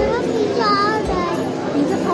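A young child's high-pitched voice, with steady background chatter of other voices.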